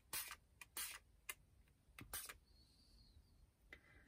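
Several short spritzes from a fine-mist spray bottle of homemade acrylic paint spray, each a brief hiss, pumped at irregular intervals about half a second to a second and a half apart.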